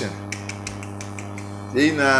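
A run of light, irregular clicks over a steady low electrical hum, followed about three-quarters of the way through by a man's voice.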